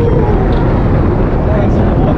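Wind roaring over the microphone of a camera riding the Raging Bull steel roller coaster at speed, a loud steady rush, with faint voices of riders in the train.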